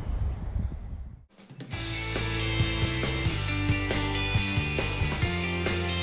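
Background music with a steady beat and held bass notes, coming in after about a second and a half of low rumbling outdoor noise that cuts off abruptly.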